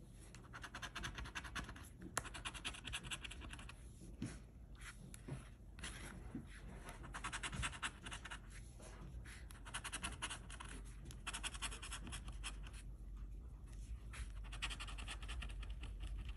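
A coin-shaped scratcher rubbing the coating off a scratch-off lottery ticket, faint and quick, in runs of rapid back-and-forth strokes with short pauses between the spots being uncovered.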